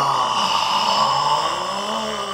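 A man's long, raspy drawn-out "ohhh" as he breathes out a hit of smoke, rising in pitch near the end.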